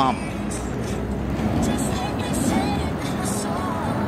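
Steady rush of wind and road noise on a phone microphone carried by a moving cyclist, with faint wavering tones over it.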